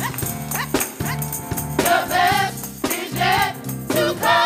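Gospel choir singing in short phrases over instrumental accompaniment with sustained bass notes and a sharp recurring percussive beat.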